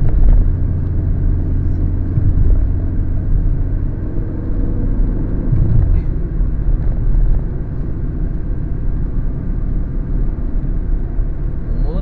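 Car cabin driving noise heard from inside the moving car: a steady low rumble of engine and tyres on the road. The deepest hum drops off about halfway through.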